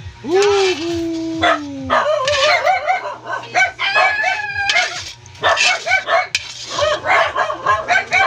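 A rooster crowing once: a long call that rises, breaks briefly, then holds and slowly falls away. It is followed by a busy run of shorter, wavering chicken calls.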